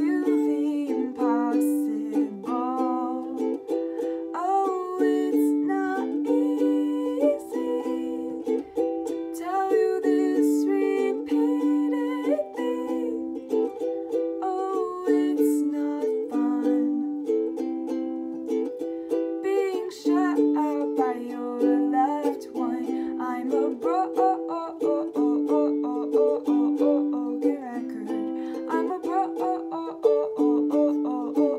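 A woman singing an original song while strumming a ukulele, her voice gliding over the steady chords.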